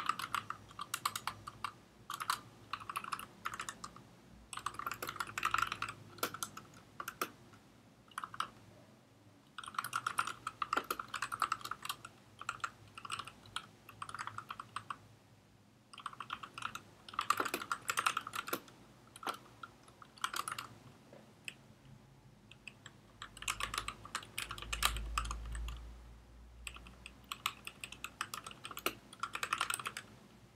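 Computer keyboard typing in bursts of rapid keystrokes with short pauses between them. A brief low rumble comes in about two-thirds of the way through.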